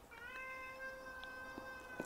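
A house cat meowing in one long, faint, steady call held for nearly two seconds: she wants to be let out.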